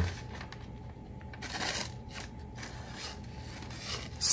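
Buck 110 folding knife's 420HC steel blade dragged through a phone-book page in a few faint, rasping slicing strokes. The edge is not cutting cleanly; the owner judges the knife due for some TLC.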